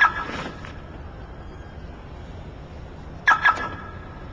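Car alarm siren chirping twice, the acknowledgement of a key-fob lock or unlock, right at the start, then another double chirp about three seconds later. Steady outdoor hiss runs between them.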